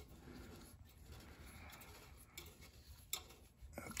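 Near silence with faint ticks and rubs of hand work as a new oxygen sensor is turned by hand into its threaded port on the exhaust pipe, and one small click about three seconds in.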